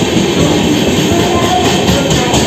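Indian Railways LHB passenger coaches rolling past a platform: a loud steady rumble and rush, with a rapid, regular clatter of wheels on the track.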